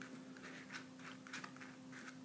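Steel palette knife scraping and spreading oil paint across a paper test sheet: a few soft, short scratches.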